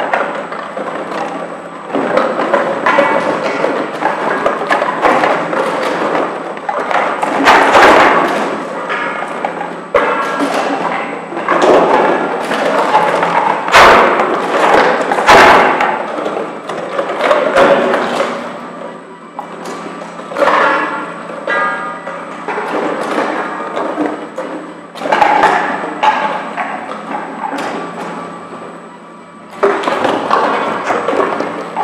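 Empty plastic PET bottles tumbling and knocking hollowly against each other and the machine's metal as the cleated incline conveyor of a CC5 container counter carries them up. The knocks come irregularly all through, with several louder thuds in the middle, and the clatter thins out toward the end as the hopper empties.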